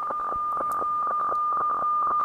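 HF weather fax (radiofax) signal at 4610 kHz coming through the software-defined radio's audio: a steady whistle-like tone with rapid ticking flutter as the picture lines are sent.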